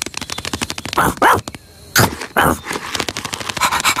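Cartoon pet ladybird's dog-like sound effects: quick tapping footsteps as it scurries off to fetch, two short dog-like vocal sounds about one and two seconds in, then rapid panting near the end.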